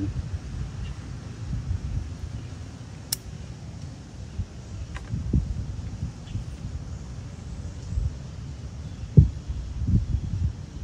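Low wind rumble on the microphone, with one sharp snip of bonsai scissors cutting a ficus branch about three seconds in and a couple of dull handling thumps later on.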